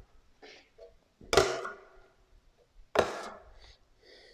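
Steel drywall trowel scooping joint compound out of a bucket and scraping it onto a hand-held hawk: two sharp strokes about a second and a half apart, each trailing off over about half a second.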